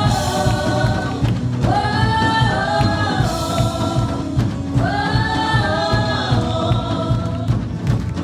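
Spanish-language gospel worship song sung by several voices over a band with a steady beat, with two long sung phrases that start about two seconds and five seconds in.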